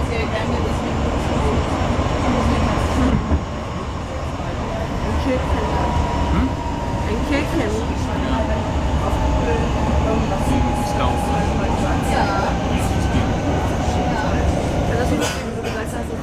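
Running noise heard inside a Hamburg S-Bahn class 472 electric train under way: a steady low rumble of wheels on track, with a thin whine that drifts slowly lower in pitch through the middle.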